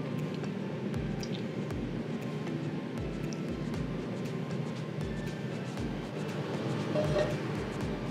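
Background music with a steady low beat, about three thumps every two seconds.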